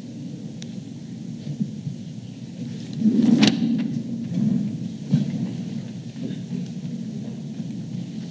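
Low, steady rumble of room noise in a large meeting hall. It is broken by a louder bump or knock about three seconds in and smaller knocks around five seconds.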